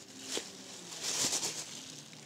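Thin plastic shopping bag rustling and crinkling as a silicone pop-it toy is put into it, the crackle densest around the middle.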